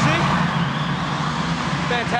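Old Chevrolet Camaro's engine running steadily as the car pulls away down a road tunnel, with traffic noise around it.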